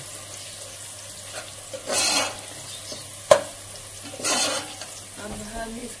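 Sliced onions, fried to light brown, sizzling steadily in hot oil in a metal pot, with a spatula stirring through them in two swishing strokes about two seconds in and again about four seconds in. A single sharp knock of the spatula against the pot comes a little after three seconds.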